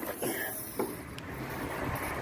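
Low outdoor background noise with a faint low hum and a brief click about a second in.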